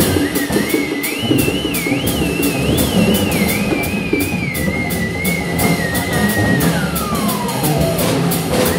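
A theremin playing a high note with wide, wavering vibrato: it climbs, settles onto a steady pitch, then glides smoothly down near the end. Underneath, a drum kit plays, with quick, steady cymbal strokes and busy drums.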